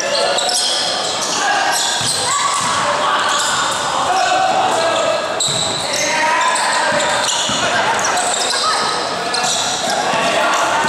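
A basketball bouncing on a gym court amid the steady din of voices calling out, echoing in a large indoor hall.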